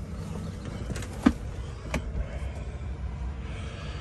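Steady low rumble of a Chevy Silverado pickup's engine idling, heard from the driver's seat, with two sharp clicks about a second and two seconds in.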